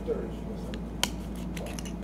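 Small clicks and rustles of Lego minifigure parts and their packet being handled, with one sharp click about a second in.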